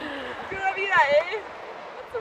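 Speech: a voice talking, with the words too unclear to make out.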